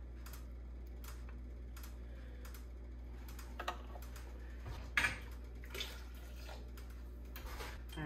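Scattered light clicks and taps of a plastic ladle against a canning funnel, glass jar and pan while hot marmalade is ladled into the jar, the loudest tap about five seconds in. A steady low hum runs underneath.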